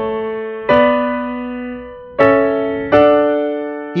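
Yamaha electronic keyboard on a piano voice playing sustained chords. A chord is already ringing at the start, and fresh chords are struck about a second in, at two seconds and just before three. Each is left to ring and slowly fade.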